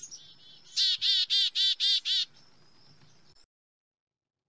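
Black-capped chickadee giving its chick-a-dee call: a quick run of about six harsh, repeated 'dee' notes starting about a second in. Fainter high notes come before and after, and the sound cuts off suddenly near the end.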